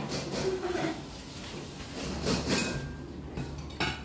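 Dishes and tableware clinking and knocking in a few separate strokes, with a sharp clink near the end, over low room noise.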